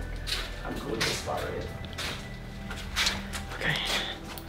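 Indistinct hushed voices with scattered knocks and rustles, over a low steady hum.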